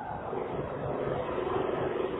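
A pause in a man's speech: only the recording's steady background hiss with a faint low hum.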